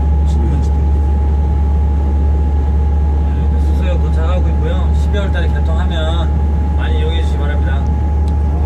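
Steady low drone inside the cab of an SRT KTX-Sancheon high-speed train creeping slowly through a tunnel, with a steady thin whine above it. People's voices talk from about three and a half seconds in.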